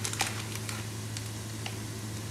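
Faint crackle of ground spices and aromatics frying in a wok, with a few light clicks over a steady low hum.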